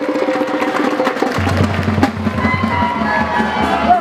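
Batucada percussion ensemble playing a fast, dense drum rhythm; deep bass drums come in about a second and a half in.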